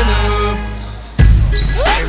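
Hip-hop backing music: a long deep bass note fades over the first second, then a hard bass hit lands just past the midpoint, with a rising glide near the end.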